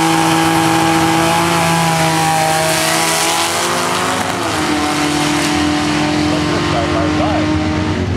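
Two drag cars, one a Ford Thunderbird, under full throttle after the launch. The engine note holds high, drops once about four seconds in at a gear shift, then holds steady again as the cars pull away.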